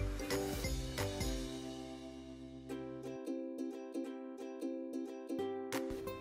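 Instrumental background music: a light tune of plucked notes.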